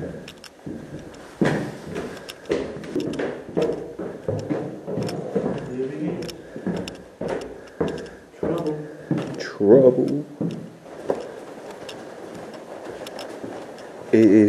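Footsteps and scattered knocks of people walking through a bare indoor corridor, mixed with indistinct talk that is loudest about ten seconds in.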